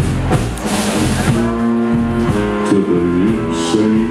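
A live blues band with a horn section playing, the horns holding long notes from about a second and a half in over the rhythm section.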